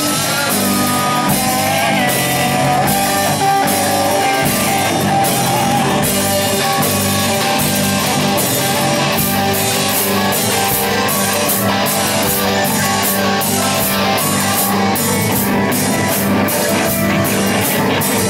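Live rock band playing: distorted-sounding electric guitars over a drum kit, with a steady stream of drum and cymbal hits at an even, loud level.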